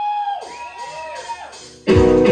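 An audience member whoops, a rising-then-held 'woo' that falls away, followed by a fainter second whoop. An electric guitar then comes in loudly, strumming, near the end.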